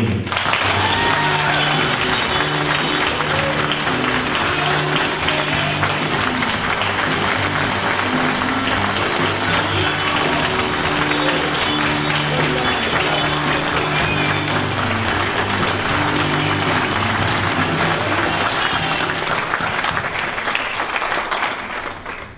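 Audience applauding, with background music playing under the clapping. The clapping tails off near the end.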